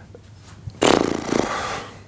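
A burst of laughter, about a second long, starting a little under a second in, over a faint low room hum.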